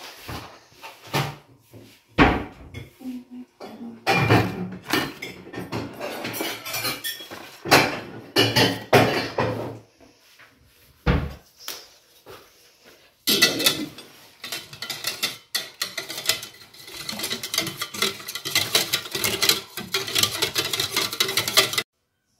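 Metal utensil stirring milk, flour and pudding powder in a stainless steel pot, clinking and scraping against the pot. The custard cream mix is being combined before cooking. Uneven strokes at first, a short pause near the middle, then fast, continuous stirring to a sudden stop.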